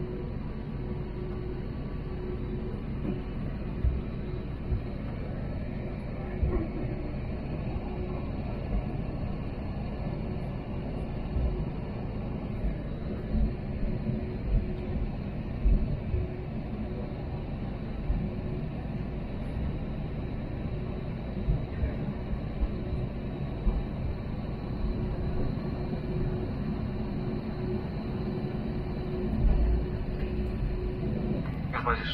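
Cabin noise of an Airbus A320neo taxiing: a steady low rumble of the idling engines and airflow with a faint steady hum. Several short low thumps, the loudest near the end.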